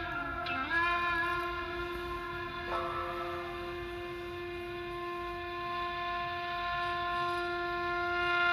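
Instrumental background music: a wind instrument holds one long, steady note, after a short dip in pitch less than a second in.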